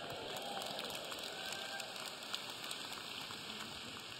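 Large audience applauding steadily after a punchline, a dense patter of many hands clapping.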